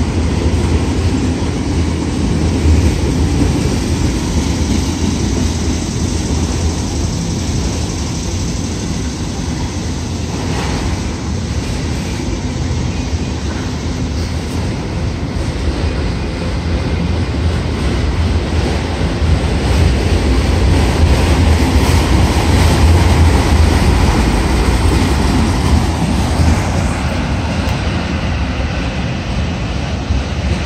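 CSX freight train's multi-level autorack cars rolling past close by: a loud, steady rumble of steel wheels on the rails, heaviest in the deep low end.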